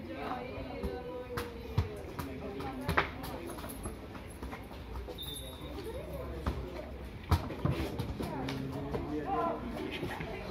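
Indistinct voices of people talking and calling near the microphone, broken by a few sharp knocks.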